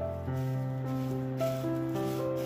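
Background music of slow, sustained notes over a held bass, the notes changing every half second or so.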